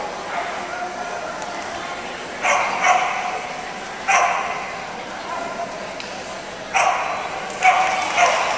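Dog barking sharply about five times, echoing in a large indoor arena, over a steady murmur of voices from people around the ring.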